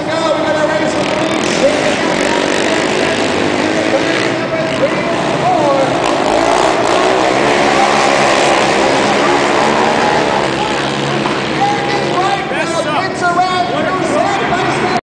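Racing ATV (quad) engines running hard on a dirt flat track, the engine note swelling to its loudest in the middle as the quads pass, with revs rising and falling through the turn.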